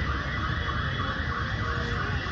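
An electronic siren or alarm wailing, its pitch sweeping up and down over and over at a steady level, under a low background rumble.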